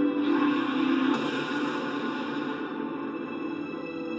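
Tense, sustained anime soundtrack music playing through a TV's speakers. A noisy sound effect swells over it just after the start and fades by about three seconds in.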